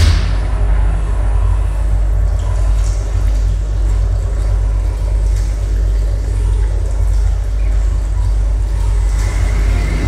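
Rocket-engine sound effect for a spacecraft: a loud, steady, deep rumbling rush of noise, opening with a sharp crack.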